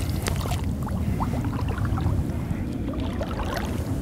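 Shallow tidal water trickling and splashing faintly in many small ticks over a steady low rumble.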